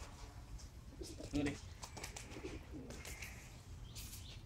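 A dove cooing, low soft calls.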